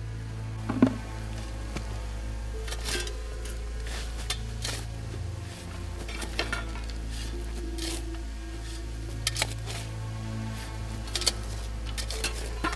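Hand digging with shovels and picks: irregular metal scrapes and strikes into soil, the sharpest about a second in, over steady background music.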